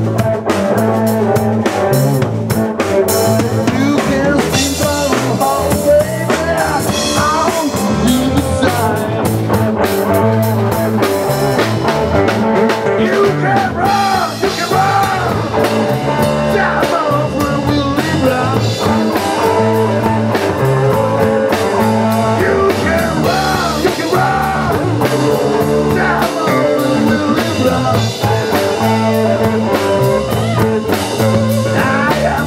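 Live blues-rock band playing: a lead electric guitar with string bends over a steady drum kit and bass.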